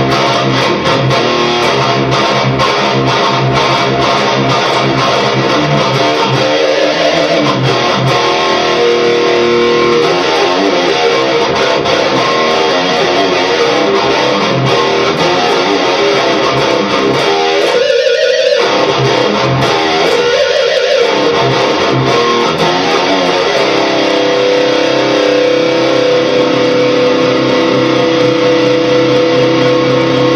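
Gibson Les Paul electric guitar played through Amplitube 2 amp-simulation software and heard over studio monitor speakers: a continuous riff with string bends around the middle, ending on a long held chord.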